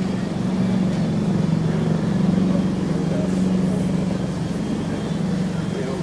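A steady low hum that shifts slightly in pitch, over the general background noise of a grocery store.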